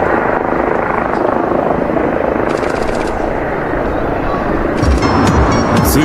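Engines of a Peach Airbus A320 jet airliner at takeoff power as it lifts off the runway: a loud, steady rushing noise. Near the end the sound changes to cabin clatter and voices.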